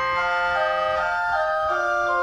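Church organ playing a calm hymn in sustained chords that change every half second or so, with no pedal bass under them.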